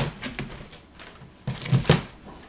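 Packing paper crinkling and rustling as it is pulled out of a cardboard box and tossed aside, in a sudden loud burst at the start and again in a louder cluster near the end.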